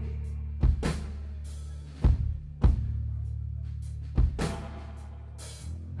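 Rock band playing live in a sparse instrumental passage: held low notes ring on while the drum kit strikes a handful of widely spaced bass-drum and cymbal hits.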